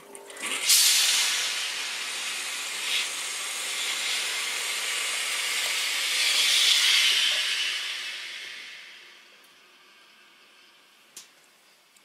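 Steam iron hissing as it steams a pressed collar seam. The hiss starts about a second in, swells, then fades away over the following few seconds.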